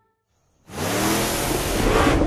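About half a second of near silence, then a monster truck engine revving up as the truck drives past close by, its pitch rising over a loud rush of noise.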